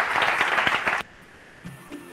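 Audience applauding at the end of a talk, a dense patter of many hands clapping, which cuts off suddenly about a second in when the video playback is paused.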